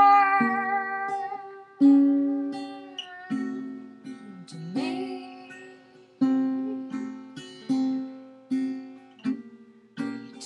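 A woman singing to her own guitar: a long held sung note fades out about a second in, then slow single strummed chords ring and die away roughly every second and a half, with a short sung phrase in the middle.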